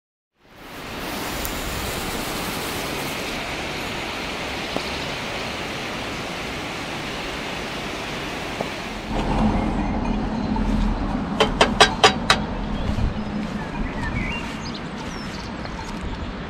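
Steady rushing of Staubbach Falls, a tall waterfall falling free down a cliff face, for about eight seconds. About nine seconds in it gives way to a quieter outdoor scene with a low rumble, a quick run of sharp clicks and a few bird chirps.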